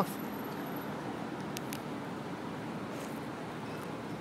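Steady hum of distant city street traffic, with a few faint clicks about a second and a half in.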